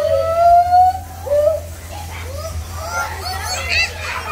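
Gibbons calling: a long hoot that climbs slowly in pitch and breaks off about a second in, then a short rising whoop, then a run of quick, rising whoops that climb higher near the end.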